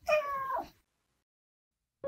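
A cat's single meow, under a second long, starting at once and fading out.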